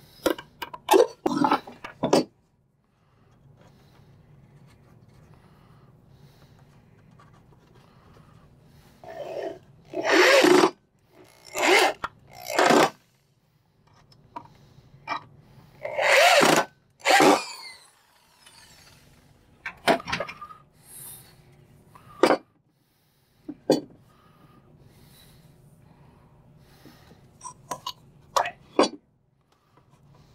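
Power drill driving screws into a wooden birdhouse in several short bursts of about a second each, with clicks and knocks of handling in the first two seconds and a low steady hum between the bursts.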